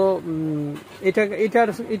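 Men talking in Bengali, with a drawn-out, held vowel in the first second and ordinary speech in the second half.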